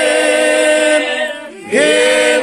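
A group of men singing together without accompaniment, in long held notes, with a short break about one and a half seconds in before the voices come back on a new note.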